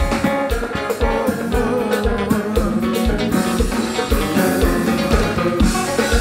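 Live gospel kompa band playing, electric guitar over a drum kit keeping a steady beat.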